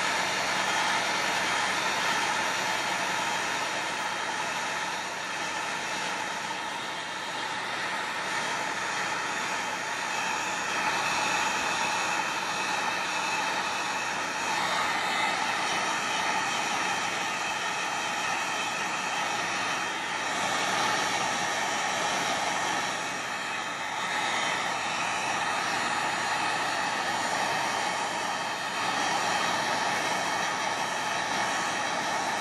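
Handheld embossing heat tool running with a steady, even whir from its fan as it blows hot air onto watercolour paper, melting silver embossing powder into raised lines.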